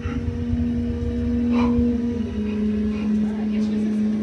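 A low, steady droning tone over a deep rumble, stepping down slightly in pitch about two seconds in: an eerie ambient drone in a dark haunted-house scene.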